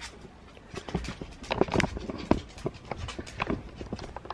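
Handling noise as a camera is picked up and repositioned: a run of irregular clicks, knocks and rustles.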